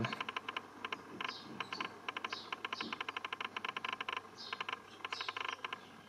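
Runs of quick faint clicks, several a second and coming in clusters, with a few short high chirps now and then.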